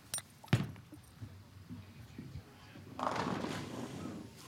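A bowling ball thuds onto the lane and rolls, then about three seconds in it hits the pins with a clatter of crashing pins lasting about a second. The shot is a nine-count that leaves the five pin standing.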